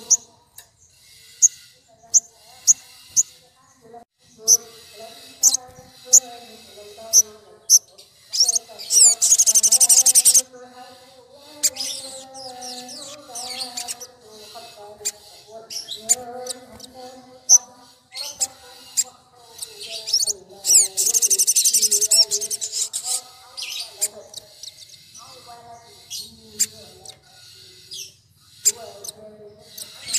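Sunbirds calling: a string of sharp, high chips, and two loud, rapid, very high trills of about two seconds each, about a third of the way in and again past the middle. A lower, wavering sound runs underneath.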